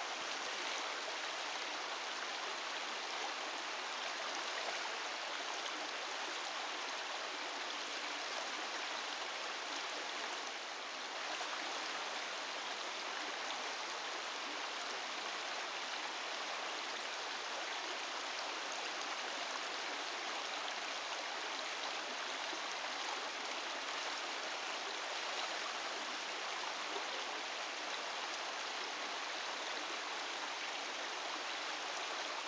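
Shallow creek water running steadily over rocks in a riffle.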